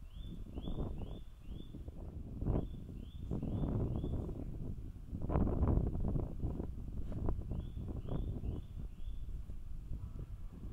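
Wind buffeting the microphone in uneven low gusts, loudest a little past the middle, with three quick runs of four short, high chirps each.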